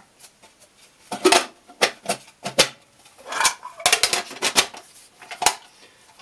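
Aluminium military mess tin and stove parts being handled, knocking and clinking against each other in a string of separate sharp metal knocks with short ringing.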